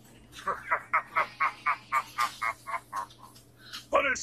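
A cartoon character's laugh from the anime soundtrack: a quick run of about a dozen short voiced 'ha' pulses, some five a second, lasting a little over two seconds.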